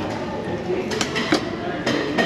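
Metal spoon and fork clinking against a bowl while eating, a few sharp clinks in the second half, over background voices.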